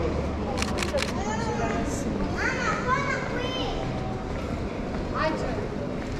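Street sounds in a narrow stone lane: passers-by's voices, with a child's high voice in the middle. Also a few quick clicks about a second in, from the Fujifilm X-T30's shutter.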